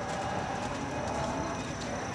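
A pony cantering close by, its hoofbeats on sand arena footing, with spectators talking in the background.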